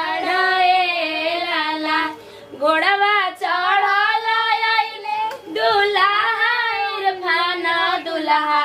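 A woman singing a Bhojpuri wedding song in a high voice, holding long wavering notes, with short breaths about two and a half and five and a half seconds in.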